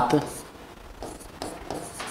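Handwriting strokes on a writing board: a few faint, short scratches and taps as the pen or stylus forms the letters.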